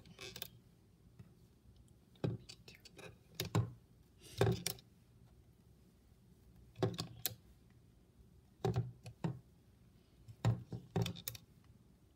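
Hands working a plastic Rainbow Loom: short clusters of small clicks and knocks, some with a low thud, about every one to two seconds as rubber bands are stretched onto the plastic pegs and the loom is handled.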